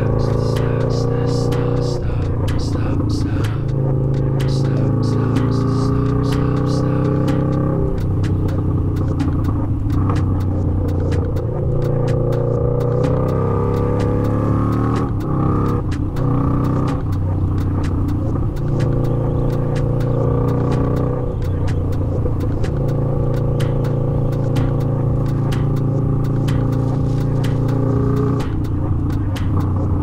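Harley-Davidson V-Rod's V-twin engine running at road speed, its pitch rising and dropping every few seconds as it revs and changes gear.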